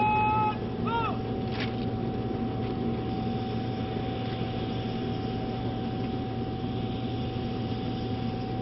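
Steady engine drone with a constant high whine from aircraft on an airport apron. A held whistle-like note cuts off half a second in, and a short rising-and-falling whistle-like note follows about a second in.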